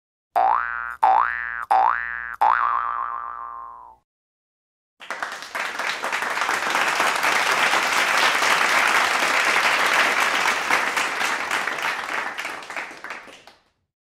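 Four cartoon boing sound effects, each a quick twang that bends upward in pitch and rings away, about two-thirds of a second apart, the last ringing longest. After a second's pause, about eight seconds of applause that fades out near the end.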